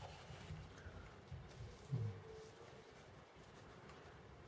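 Quiet room with faint handling noise as a plastic scale model tank is turned over in the hand. There is a brief low sound about two seconds in.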